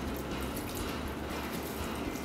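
Bourbon poured in a steady thin stream from a glass measuring cup onto sliced bananas in a glass bowl: a continuous liquid trickle.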